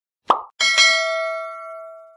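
A short pop, then a bright bell ding that rings out and fades over about a second and a half: a sound effect for an animated bell graphic.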